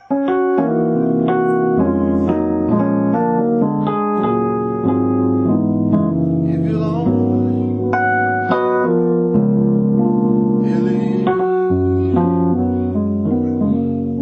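Digital keyboard with a piano voice playing gospel-style chords: full sustained chords over low bass notes, changing every second or so.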